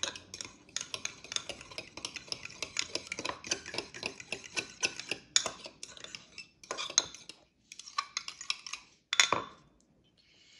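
A metal fork stirring mango pulp and gelatin mixture in a glass Pyrex measuring cup, clinking rapidly against the glass. After about six seconds the clinks thin out into a few separate bursts, the loudest about nine seconds in.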